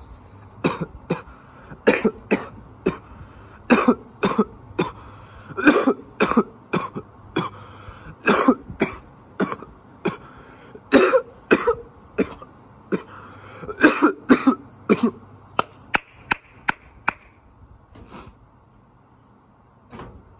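A man coughing hard and repeatedly after a bong hit: dozens of harsh coughs in bunched fits, easing off a few seconds before the end.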